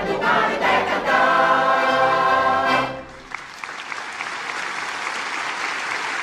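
A mixed folk choir of men and women, with accordion, holds the last chord of a song, which ends about three seconds in. Audience applause follows.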